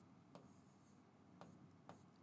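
Near silence, with three faint taps of a stylus writing on an interactive whiteboard screen.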